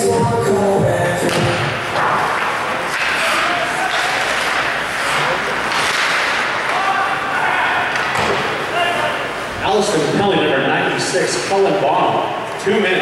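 Ice hockey play in a rink: sharp bangs of the puck and players against the boards, several of them near the end, over a steady din of voices. Music from the arena speakers trails off at the start.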